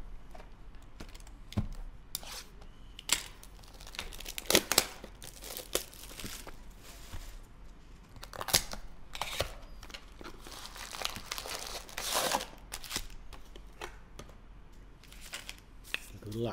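A trading-card box being opened by hand: the wrapping and cardboard tear and crinkle in irregular bursts with sharp clicks, then foil card packs rustle as they are taken out and stacked.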